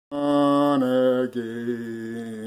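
A man's voice holding three long sung notes without words, each a little lower than the one before; the first is the loudest.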